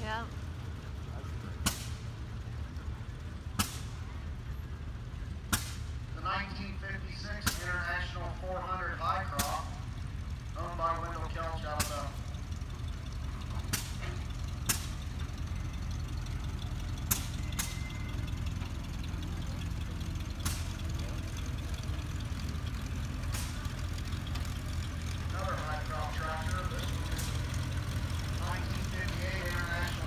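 Low, steady running of old vehicle engines as a vintage International truck and then an old tractor on steel wheels pass, growing slightly louder toward the end. Sharp pops come about every two seconds over it.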